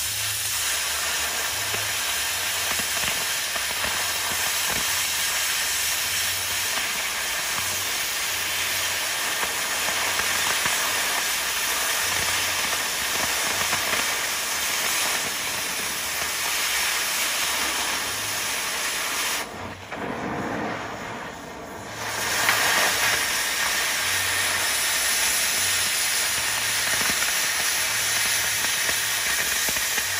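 Oxy-acetylene cutting torch with its cutting oxygen on: a loud, steady hiss as the jet burns through steel plate. The hiss drops away for about two seconds around two-thirds through, then comes back abruptly with a brief louder burst.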